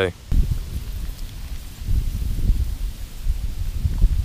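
Low, uneven rumble of wind and movement on the camera's microphone, with light rustling.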